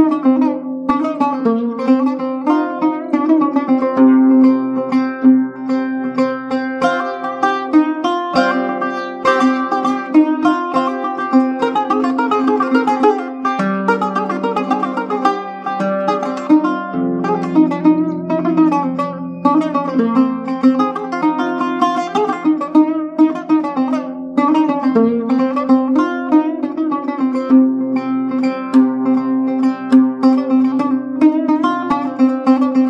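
Solo oud playing a rapid melody of plucked notes over lower notes that shift every few seconds, in an original piece built on an Iraqi folk melody.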